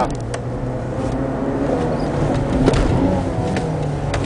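Competition car's engine heard from inside the cabin, running steadily at speed along a straight, over road and wind noise.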